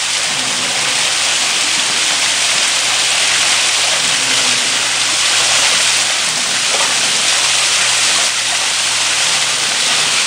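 Small waterfall splashing steadily down rocks.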